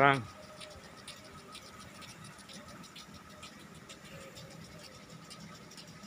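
Faint, steady hiss of several sprinklers spraying water across a grass football pitch, with scattered light ticks.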